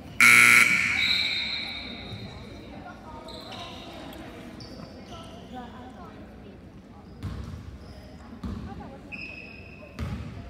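A gym scoreboard horn sounds one short, loud blast that rings on in the hall for about a second and a half. Then sneakers squeak and a basketball bounces on the hardwood court a few times near the end.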